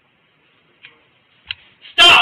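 A few short, faint clicks in a quiet hallway, the sharpest about three quarters of the way through, with a loud shouted voice breaking in at the very end.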